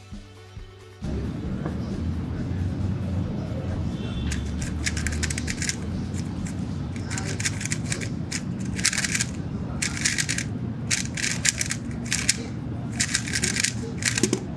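Background music comes in about a second in, over the rapid plastic clicking and rattling of a MoYu HuaMeng YS3M 3x3 speedcube (standard, non-magnetic-core version) being turned fast in a timed solve. The turning comes in bursts of quick clicks with short pauses between.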